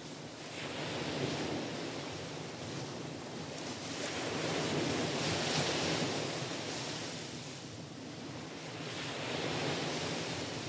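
Ocean surf, waves washing in and drawing back in three slow swells about four seconds apart.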